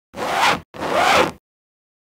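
An edited-in sound effect: two short, scratchy swishing noise bursts of about half a second each, cutting off into silence about halfway through.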